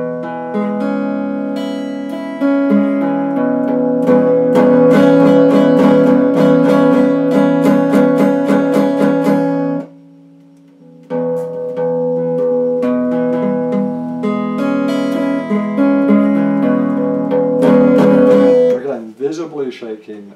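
Electric guitar played in a practice passage of held notes and quick picked notes. The playing stops for about a second just before the midpoint, then starts again and stops about a second before the end.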